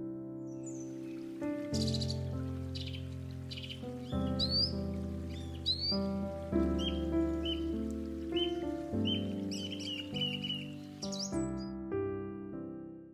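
Slow piano background music, held chords changing every second or two, with birds chirping high over it through most of the stretch.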